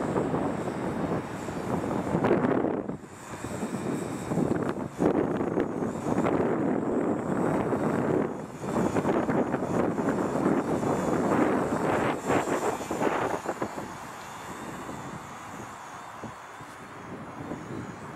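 Buzz of a Parkzone UM P-51D micro RC plane's small electric motor and propeller in flight, mixed with gusting wind, the sound swelling and fading unevenly and growing quieter near the end.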